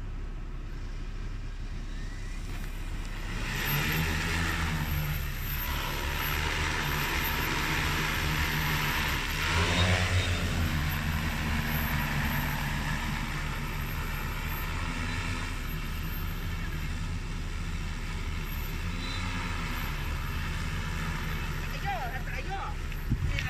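Joyance JT30L-606 electric crop-spraying drone's rotors humming. The hum starts about three seconds in, is loudest around ten seconds in as the drone flies near, then settles to a steadier, slightly quieter hum as it moves off over the field.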